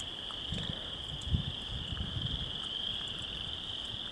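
A steady, high-pitched chorus of calling frogs. It runs evenly throughout, with some low rumbling in the first half.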